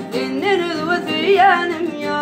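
A man singing a Turkmen song in a wavering, ornamented vocal line, accompanied by his own acoustic guitar.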